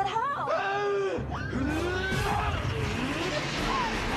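Wordless cries sliding up and down in pitch, over a low rumbling noise that sets in about a second in.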